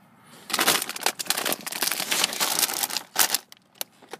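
Crinkling and rustling of grocery packaging being handled, dense from about half a second in until about three seconds, then a few scattered clicks.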